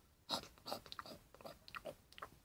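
A person making faint, irregular clicking and chomping noises with the mouth, about eight to ten in two seconds, imitating the demolition machines chewing up concrete.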